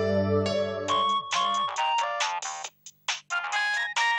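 Sustained background music of held notes gives way, about a second in, to a mobile phone's melodic ringtone: a quick run of short electronic notes with brief gaps.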